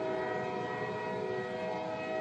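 Train horn sound effect: one long, steady blast sounding several notes at once as a chord.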